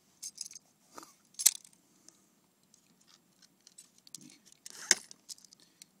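Hands handling a small plastic knot-tying tool and fishing line close to the microphone: scattered clicks and rustles, the sharpest about one and a half seconds in and another near five seconds in.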